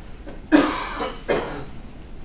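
A person coughing into a meeting-room microphone, two sharp coughs under a second apart.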